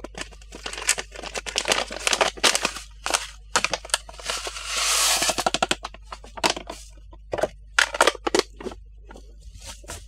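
Crinkling and crackling of a foil seed packet being handled, with pelleted seeds poured into the clear plastic hopper of a Jang seeder as a steady rush about four seconds in, lasting about a second and a half.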